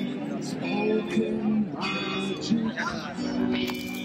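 Music: a song with a singing voice and strummed guitar, the voice holding notes and moving between them.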